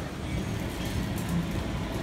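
Steady noise of ocean surf breaking, with wind on the microphone.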